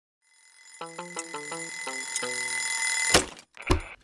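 Twin-bell mechanical alarm clock ringing steadily and growing louder, then cut off by a loud thump about three seconds in, with a second thump just before the end: the clock being slapped silent.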